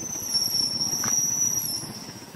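A steady high-pitched whine that swells through the middle and fades near the end, heard over faint outdoor background noise.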